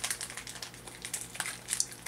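Foil Pokémon booster pack wrapper crinkling in the hands as they work at its crimped seal, a run of quick, irregular crackles.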